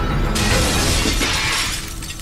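Crash of objects being smashed and sent flying, beginning about a third of a second in and lasting over a second before it dies away, over dramatic background music.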